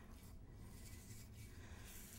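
Faint swishing of a bristle paintbrush spreading wet glaze over a lamp's surface, a few soft strokes over quiet room tone.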